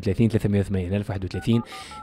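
Telephone keypad (DTMF) tones: about four short beeps in quick succession, each a pair of steady tones, in the second half, following a man's speech.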